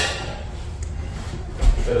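A sharp knock with a short ringing tone at the very start, faint voices in the room, and a dull low thump near the end.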